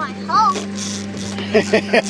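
A child laughs briefly over the steady low hum of the boat's motor running.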